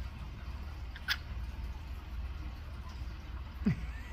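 Cockatiel nibbling and tearing lettuce with its beak: a few brief crisp clicks over a steady low hum, with a short falling squeak near the end.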